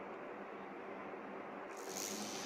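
Faint, steady room tone with a low hum underneath; no distinct sound event.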